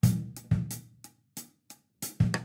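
Drum kit playing a slow rock groove: closed hi-hat in eighth notes over a syncopated bass-drum figure, with the snare played as a cross-stick rim click. The two loudest hits, at the start and half a second in, are bass drum with hi-hat.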